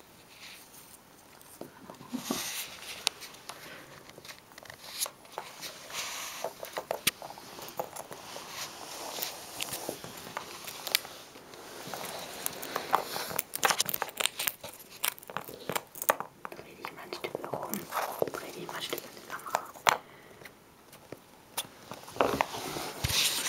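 Hamster gnawing and cracking a peanut in its shell: a long run of small, irregular crackles and clicks.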